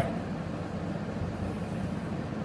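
Steady fan-like background noise with no distinct events.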